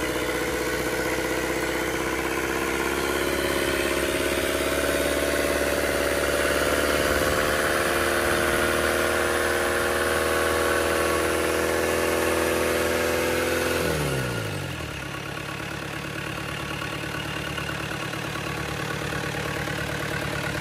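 FAW 498 four-cylinder turbo-diesel engine running on a test stand at a raised speed, its pitch creeping up slightly early and then holding steady. About two-thirds of the way through, the revs fall away quickly and it carries on at a lower, quieter idle.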